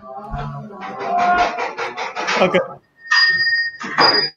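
A man laughing in a quick run of short, even bursts, then, near the end, a brief steady electronic tone.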